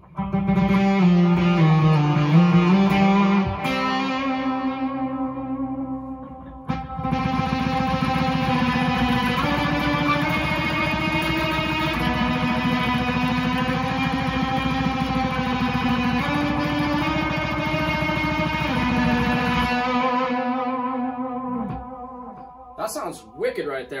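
Electric guitar through the Onkel Amplification Death's Head fuzz pedal (germanium transistors and a 12AU7 tube) at a low-gain setting, with reverb and delay, playing slow ambient held notes. A short phrase in the first few seconds rings out, then a long passage of sustained notes shifts pitch every couple of seconds and fades away near the end.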